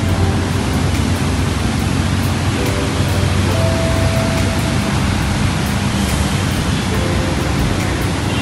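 A steady, loud rushing noise with no breaks, with a few faint held tones over it, such as background music.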